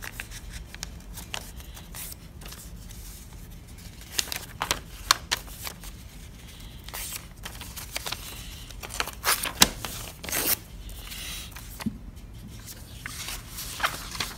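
A sheet of paper being folded and creased by hand: crisp rustles and sharp crackles come in scattered clusters, the loudest about four to five seconds in and again around nine to ten seconds in.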